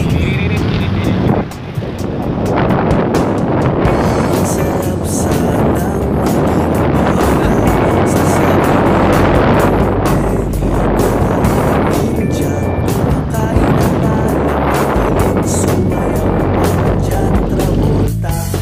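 Loud, rushing road and wind noise from a moving vehicle, with background pop music underneath.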